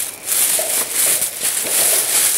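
Thin plastic shopping bags crinkling and rustling as they are handled and rummaged through.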